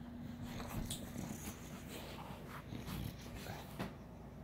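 A bulldog snuffling and breathing noisily in irregular short sniffs as it climbs onto a quilted blanket, nose pressed into the fabric, with the blanket rustling under it.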